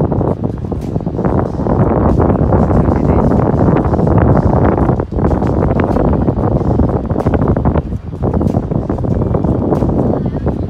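Wind buffeting the microphone: a loud, gusting low rumble that briefly drops about five and eight seconds in.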